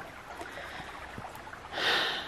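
Creek water running with a steady rushing babble. Near the end a person draws a quick, audible breath.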